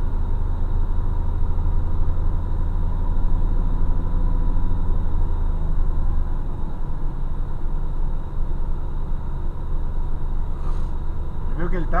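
Heavy truck's engine and road noise heard from inside the cab as a steady deep drone, which changes about six seconds in.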